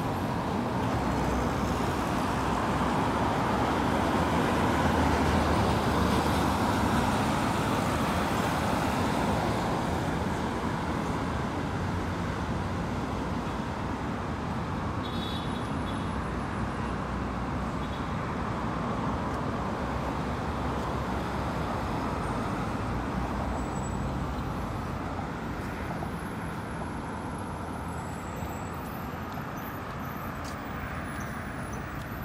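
Steady road traffic noise of passing engines and tyres, swelling as a vehicle goes by about five seconds in, then settling.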